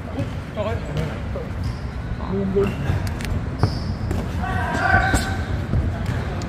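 Boxing-glove punches landing in sparring: a few sharp thuds a second or more apart, with voices around them.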